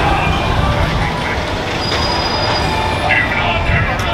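Busy street ambience: car traffic driving past and people talking in the crowd on the sidewalk.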